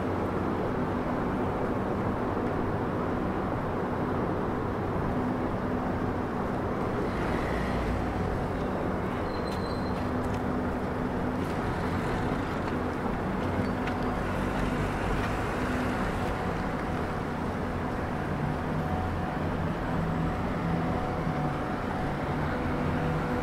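Street traffic: car engines and tyres passing over a steady low hum, with one car's engine more distinct in the last few seconds.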